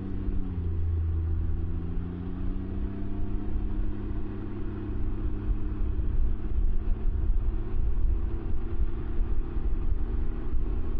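Can-Am Ryker three-wheeler's engine accelerating, its note rising in pitch over the first few seconds and then holding steady as road speed builds. Under it runs a steady low rumble.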